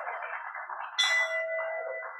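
A meeting bell is struck once about a second in and rings on with a clear, lingering tone over a steady hiss; it is the bell rung to adjourn the meeting.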